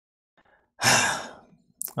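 A person's breathy sigh about a second in, loud at first and fading out over about half a second, with a small mouth click just before speech resumes.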